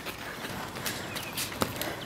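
Metal forearm crutches tapping on a concrete sidewalk: a few irregular sharp clicks, the loudest about one and a half seconds in.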